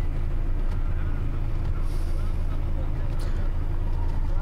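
Steady low rumble of a car's engine and running noise heard from inside the cabin.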